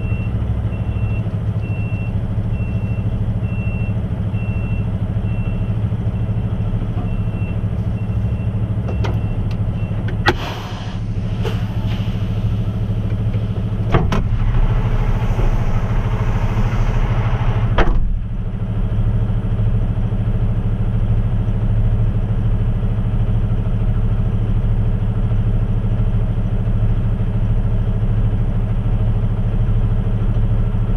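Heavy truck's diesel engine idling steadily, heard from inside the cab. A high electronic beep repeats for about the first six seconds, and between about ten and eighteen seconds in there are several clicks and knocks with a few seconds of hissing noise, ending in a clunk.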